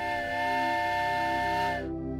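A train whistle blowing one long steady note with a hiss, cutting off near the end, over soft sustained background music.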